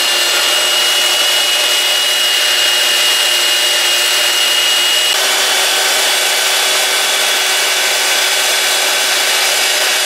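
Benchtop belt sander running steadily while a small deer-antler spout plug is held against the belt and ground down. A high tone in its noise steps down lower about halfway through.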